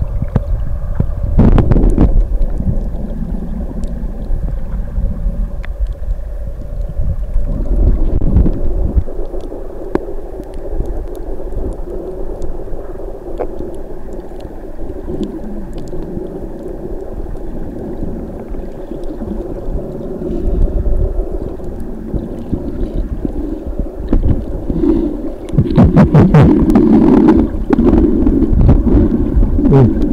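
Muffled underwater sound of water moving around a submerged camera during snorkeling: a steady low rumble with a few sharp clicks. It grows louder and more uneven in the last few seconds, as a finned swimmer kicks close by.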